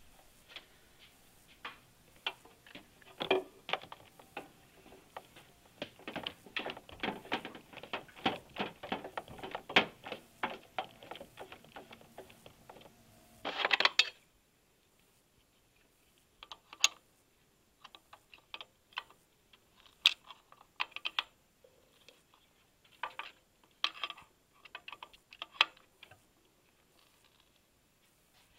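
Irregular light clicks and taps of hands and tools working on hoses and fittings in a truck's engine bay, quick and dense for the first half, a short louder rattle about 14 seconds in, then sparser clicks over a quiet background.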